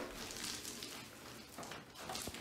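Paint roller rolling thinned joint compound across a ceiling: a faint, steady wet hiss that dips slightly near the end.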